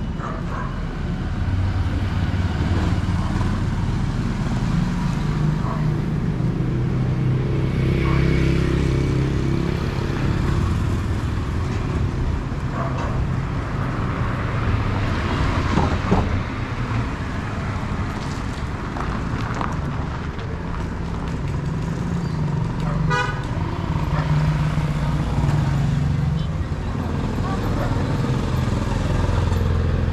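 Roadside traffic: motor vehicles running along the street with a steady engine drone, a minivan passing close about halfway through, and a short horn toot later on.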